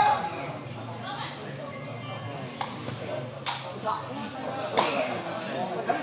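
A sepak takraw ball struck by players' feet during a rally: three sharp smacks, roughly a second apart, in the second half, over background crowd chatter.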